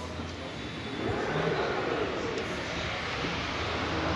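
Rear tailgate of a Toyota SW4 SUV forced open by hand, its power opening not working without the key: a noise of the hatch moving that gets louder about a second in and carries on.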